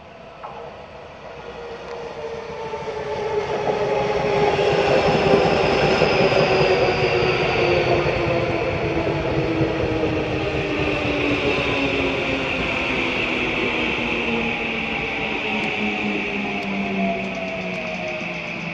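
Tokyu 3020 series electric train arriving and slowing, its motor whine falling steadily in pitch over wheel-on-rail rumble. It grows louder over the first four seconds or so as the train draws alongside.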